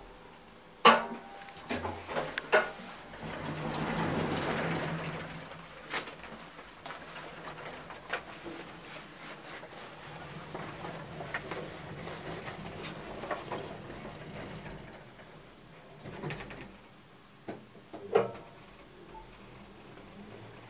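Elevator sounds from a 1997 KONE Monospace machine-room-less traction lift, heard from inside the car. A loud clunk and a few clicks come about a second in, then a swelling rush about four seconds in as the car gets under way. The ride is quiet with small clicks, and another loud clunk comes near the end.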